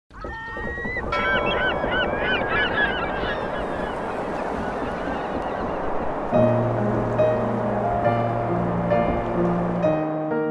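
Birds calling, many short rising-and-falling calls in the first few seconds, over a steady rushing background; slow piano music comes in about six seconds in with long held notes.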